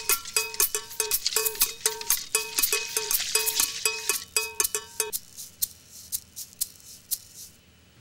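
Wire whisk stirring rapidly in a plastic bucket of water, dissolving soda ash and water softener. Quick scraping strokes against the bucket wall, each with a light metallic ring. The stirring stops about five seconds in.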